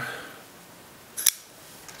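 Kizer Gemini flipper knife flicked open: the blade swings out on its bearing pivot and snaps into the titanium frame lock with one sharp click a little over a second in.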